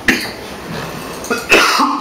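A man coughing: a sharp cough right at the start and another, louder cough about a second and a half in.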